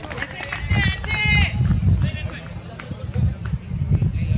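Wind buffeting the microphone in a constant low rumble, with short high-pitched shouted calls from players on the field about a second in.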